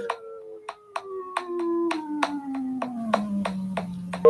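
Waveform generator app on a mobile phone sounding a pure tone that glides steadily down in pitch, from about 500 Hz to under 200 Hz, as its frequency knob is turned. Short clicks sound about four times a second along with the tone.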